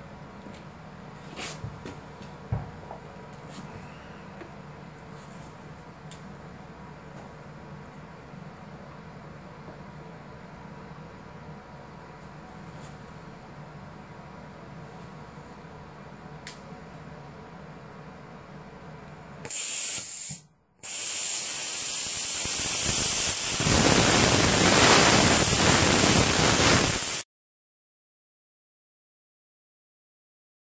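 Longevity Weldmax 185i plasma cutter: a low, steady hum for about twenty seconds, then a short burst of hissing air, a brief gap, and a loud, even hiss of the torch cutting for about six seconds that cuts off suddenly.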